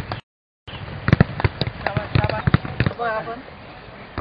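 Footballs being kicked during a training drill: a rapid, uneven run of sharp thuds lasting about two seconds, followed by a short voice shout near the end.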